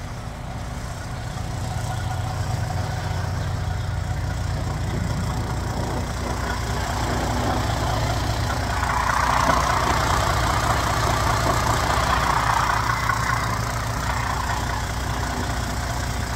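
Diesel truck engine idling steadily with a low hum, with a louder rushing noise added for a few seconds in the middle.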